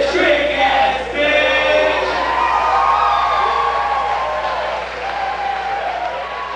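A live band's song ending, its held final notes fading out while the crowd cheers and shouts.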